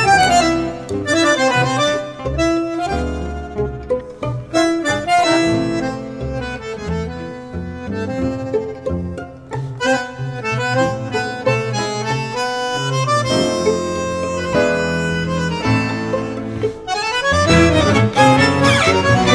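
Instrumental tango played by a bandoneon-led ensemble over a bass line, with the bandoneon to the fore. The playing is in sharply accented rhythmic chords.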